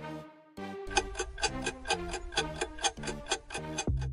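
Quiz countdown music with a clock-like ticking, running while the answer timer empties. After a brief gap under half a second in, the ticking picks up fast and even about a second in over a bass line.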